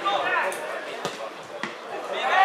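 A football being kicked on a grass pitch: a couple of sharp thuds about half a second apart, with players' raised voices shouting at the start.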